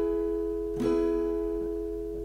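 Acoustic guitar E major chord ringing, struck again a little under a second in and then slowly fading.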